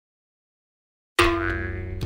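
About a second of silence, then a sudden cartoon 'boing' sound effect that rings with a pitched tone and slowly fades.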